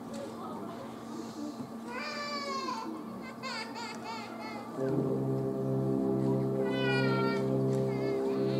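A school concert band starts playing about five seconds in: full, sustained chords over a low note repeated about once a second. Before the band comes in, a few short, high, wavering squeals sound in the quiet hall, and one more sounds over the music.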